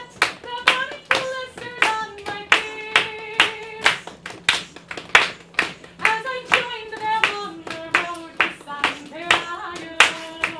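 Hands clapping steadily in time, about two to three claps a second, along with a sung melody that has long held notes.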